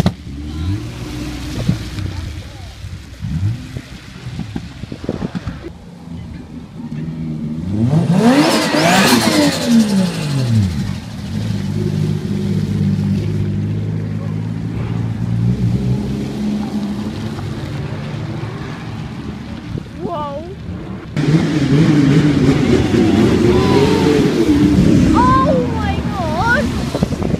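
Sports cars driving out one after another. About eight seconds in, one revs hard as it passes, its engine note climbing and then falling away. Then a car's engine runs steadily at low revs close by, and another engine grows louder near the end.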